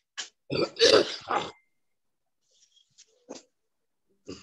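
A person's throat noises: a quick run of short, rough bursts between about half a second and a second and a half in, then a faint click near the end.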